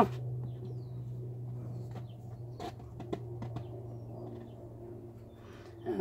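A steady low hum in the room, with a few faint clicks and taps as an upturned cup of pouring paint is lifted off a canvas and set down; the paint flowing out is nearly silent.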